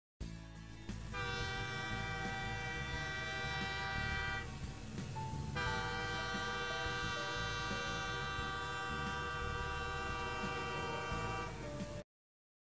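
Steam locomotive whistle, blown as two long blasts, the second about twice as long as the first, over a low steady rumble.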